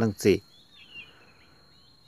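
A word of speech, then faint background ambience: a few short bird chirps early on over a steady high-pitched tone.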